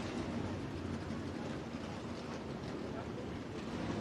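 Dirt super late model race car engines running low and steady as the cars roll slowly off the pace after the checkered flag, heard faintly under a general track-noise hum.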